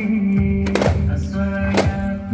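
Music with held, sustained tones over sharp drum strikes: a quick pair just before the middle and another near the end.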